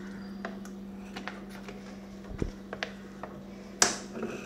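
Light clicks and knocks of a plastic oil bottle being handled over an aluminium pressure cooker as oil is poured in. There is a low knock about halfway through and a sharper click near the end, over a steady low hum.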